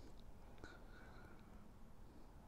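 Near silence with faint, soft breathy sounds of a man drawing on a tobacco pipe.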